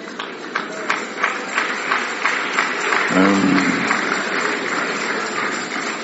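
A congregation applauding: quick claps thickening into a steady wash of clapping. A single voice calls out briefly about three seconds in.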